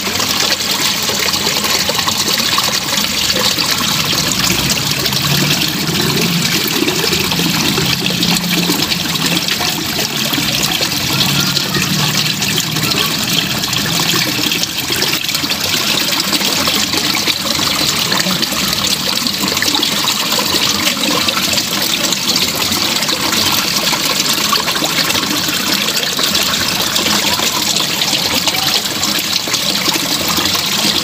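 Water flowing steadily through a small roadside drain channel, a continuous rushing trickle over stones.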